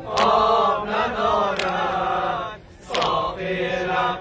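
A group of men chanting a Muharram noha in unison, a mourning lament in Dari/Hazaragi, with a sharp collective chest-beat (sinezani) landing about every second and a half, three times.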